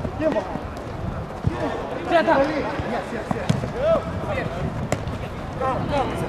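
A football kicked and passed on an artificial-turf minifootball pitch: a few sharp thuds of boot on ball, spread over several seconds, among players' shouts.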